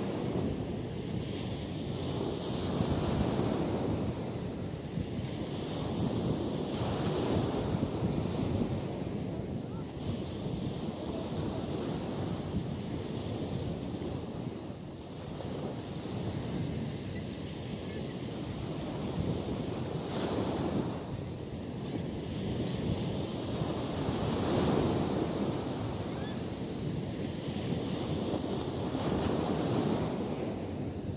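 Ocean surf washing ashore, swelling and fading every few seconds, with wind on the microphone.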